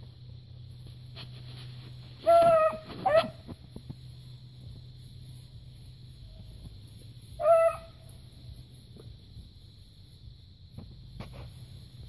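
A beagle barking while trailing rabbit scent: two short barks about two and a half seconds in and a third near eight seconds.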